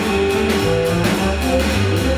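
Small jazz group playing live: an electric guitar plays a line of single notes over low bass notes, with a Gretsch drum kit keeping time on cymbals and drums.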